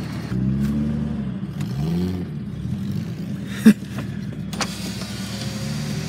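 Datsun 280ZX's fuel-injected L28E straight-six, cold, rising and falling in pitch twice early on, then running steadily under the cabin. A single sharp click a little past the middle is the loudest sound.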